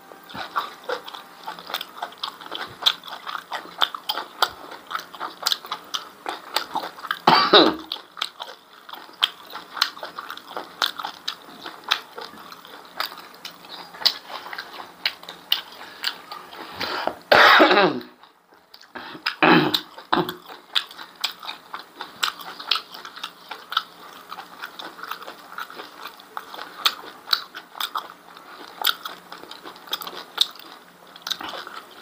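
Close-up chewing of beef tripe and rice: wet, sticky mouth clicks and smacking going on all through. Three loud coughs break in, one about a third of the way in and two close together past the middle.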